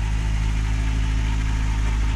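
Volkswagen Gol G2 ('Gol bola') engine idling steadily with an even low hum. It has been left running because its weak battery may not start it again.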